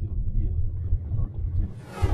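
A car driving, heard as a pulsing low rumble, with a rising whoosh near the end.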